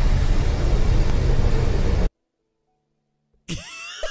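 Loud, deep rumbling noise, the anime's sound effect for the looming giant titan, cut off abruptly about two seconds in. After a moment of dead silence, a sound with gliding pitches starts near the end.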